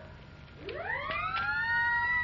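A cartoon whistle effect sliding up in pitch. It starts about half a second in and levels off near the end, marking the upright piano rising into the air.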